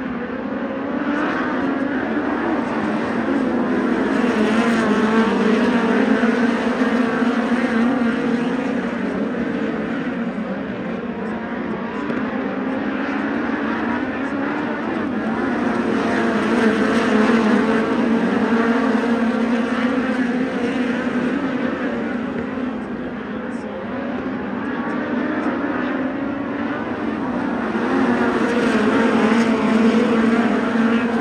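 A pack of USAC midget race cars running laps on a dirt oval, their engines a steady drone. The sound swells and fades about every twelve seconds as the pack comes past and goes away around the track.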